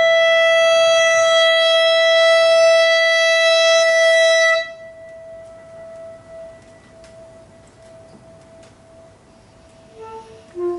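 A single-reed woodwind holds one long, steady, high note that stops abruptly a little before halfway. A faint ring of the same pitch fades over the next few seconds into quiet room sound.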